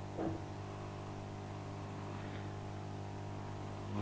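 Siron 850A hot air SMD rework station running with its air flowing, giving a steady low hum and light hiss as the heat is turned down to minimum.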